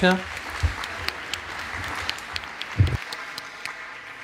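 Audience applauding, thinning out toward the end, with one brief low thump about three seconds in.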